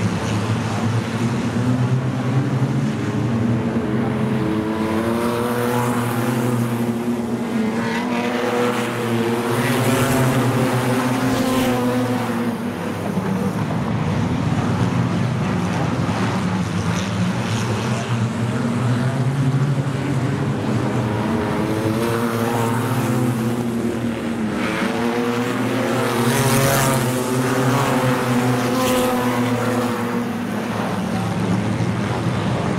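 A pack of wingless sprint cars racing on a dirt speedway oval. Their engines rise and fall in pitch as they accelerate down the straights and back off into the turns, swelling loudest about twice as the field laps past.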